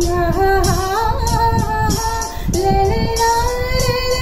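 A woman singing long held, slightly wavering notes over an instrumental backing track with a steady percussion beat.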